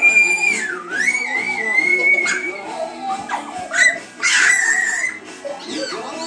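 A young child's high-pitched squeals over background music. First comes one long held squeal that dips and climbs back, then a shorter, shriller shriek about four seconds in.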